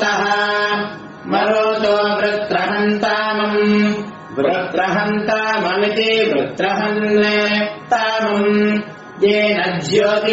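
Vedic chanting in Sanskrit, recited on a nearly level pitch in phrases a second or two long, separated by brief pauses.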